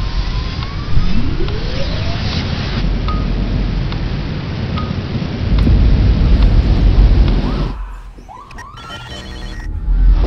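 Trailer sound design: a loud, dense rumble of noise with rising sweeping tones through it, swelling in the deep bass past the middle. It cuts away sharply near the end to a quieter stretch with a few short rising tones.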